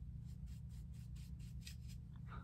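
Faint, quick swishing of a powder brush's bristles swirled in a pressed-powder pan, in about five short strokes a second, as the brush is loaded with setting powder.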